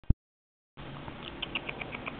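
Musk lorikeet making a quick run of short, high ticks, about eight a second, starting a little past a second in. A sharp click comes at the very start, before a moment of silence.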